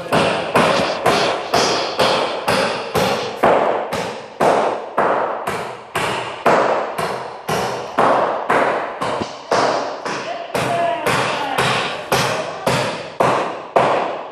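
A hammer nailing into stacked lumber boards to build up a long wooden beam. Steady blows at about two a second, each ringing briefly in the metal-walled building.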